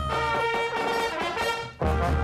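High school pep band brass (trumpets, trombones and saxophones) playing held notes. The music breaks off briefly near the end, then starts again.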